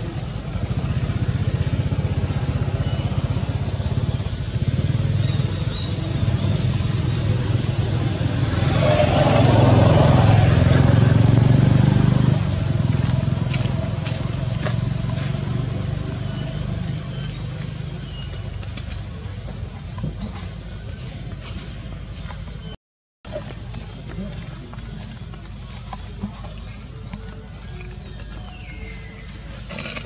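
Outdoor traffic ambience: a steady low motor-vehicle engine drone swells to its loudest for a few seconds just before the middle as a vehicle passes, then fades. The sound cuts out briefly about two-thirds of the way through.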